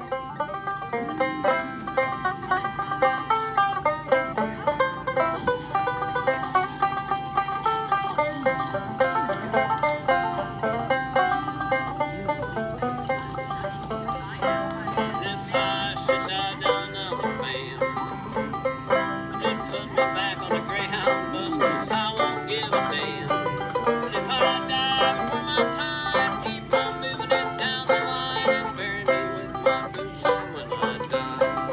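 Banjo played solo in a bluegrass style: a quick, steady stream of plucked notes.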